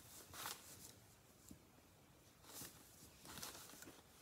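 Near silence, with a few faint swishes of a dry cloth rubbing white wax back off a painted candlestick.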